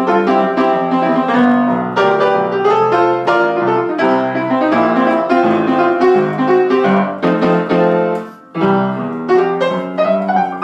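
Piano playing a rock piece with busy two-handed chords and runs. The playing breaks off briefly about eight and a half seconds in, then carries on.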